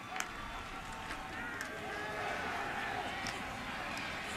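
Stadium crowd noise at a football game during a live play, with scattered faint shouts and a few sharp knocks, growing slightly louder as the play goes on.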